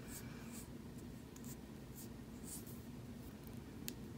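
Faint scratchy rubbing in short strokes as a fingertip presses and smooths a gel nail strip onto a fingernail, with one light tick near the end.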